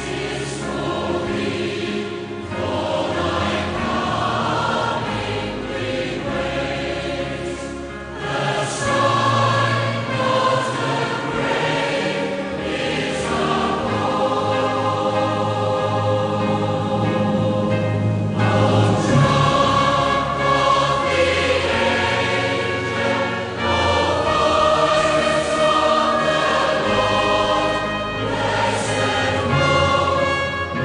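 Choral music: a choir singing sustained chords over instrumental accompaniment with a stepping bass line.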